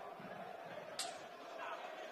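Stadium crowd murmuring steadily over a football match, with one sharp knock about a second in, a boot striking the football.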